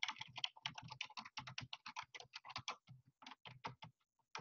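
Faint typing on a computer keyboard: a quick, uneven run of key presses, pausing briefly about three seconds in before a last short flurry.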